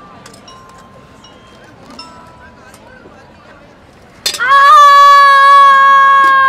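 A performer's long, loud, high-pitched vocal shriek held at one steady pitch for about two and a half seconds. It starts about four seconds in and cuts off sharply, after several seconds of quiet. In a scene about cooking dal it stands for a pressure cooker's whistle.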